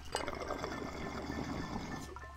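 Water bubbling in a glass bong as smoke is drawn through it. It starts just after the beginning, gets deeper as it goes, and stops near the end.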